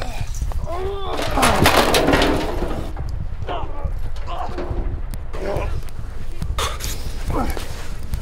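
Men grunting and crying out in a scuffle. About a second and a half in comes a loud, clattering crash as a trash barrel is knocked over, followed by scattered grunts and thuds.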